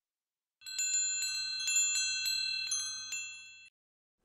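Chimes struck about a dozen times in quick succession over some three seconds, several high tones ringing together and fading out. It is a cue sound marking the learner's turn to answer.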